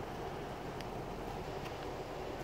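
Steady background noise inside a car's cabin: a low rumble and hiss, with a couple of faint ticks.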